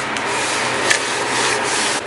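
Hand wiping the bottom of a drawer clean, a steady scrubbing rub over the surface, with a light knock about a second in.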